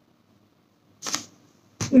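A pause in a woman's speech: near silence, then a short breath about a second in and a mouth click as she starts speaking again just before the end.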